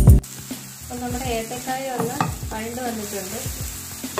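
Diced banana frying and sizzling in a nonstick pan while a spatula stirs and scrapes through it. Background music cuts off just after the start.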